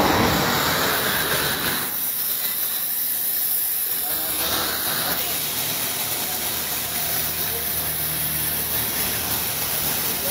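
Compressed air hissing steadily out of a lorry's tyre valve as it is held open, deflating the tyre.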